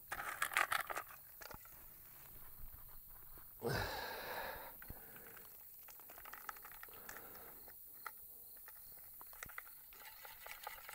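Faint crunching and crackling of dry clay and grit as soil is scooped by hand and pressed into a steel AK magazine, thickest in the first second, followed by scattered small ticks of grit.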